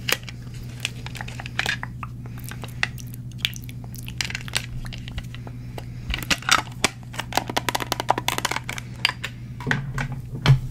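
Long press-on nails tapping and clicking on a plastic phone case close to the microphone: scattered taps at first, then a fast run of taps near the end. A steady low hum lies underneath.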